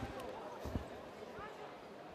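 A single thump from a blow landing in a kickboxing bout, about three-quarters of a second in, over voices calling out around the ring.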